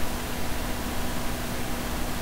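Steady hiss of the recording's background noise, with a faint steady hum underneath; no other sound.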